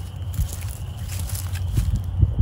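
Footsteps on soft, muddy ground with dead grass and leaves: a few dull steps over a low, steady rumble.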